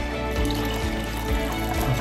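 Background music, with pineapple juice trickling from two cans into a saucepan.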